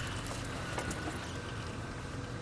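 Safari vehicle's engine running at idle, a steady low rumble.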